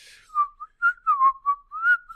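A person whistling a short tune: a handful of clear notes at about the same pitch, the last one sliding upward.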